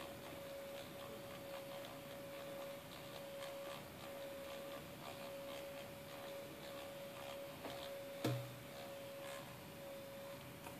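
Small CD-ROM spindle motor spinning a stack of three CDs at full speed, giving a faint steady whine, with light irregular ticking. A single sharp click about eight seconds in.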